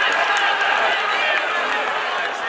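Crowd of spectators shouting and calling out, many voices overlapping.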